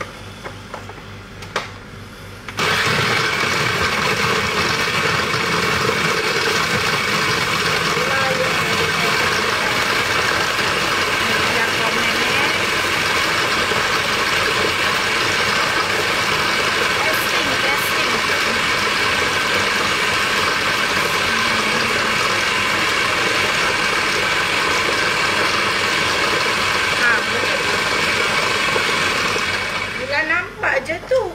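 Kitchen cooker hood extractor fan running: a steady motor whir that switches on suddenly about two and a half seconds in and holds at one level throughout.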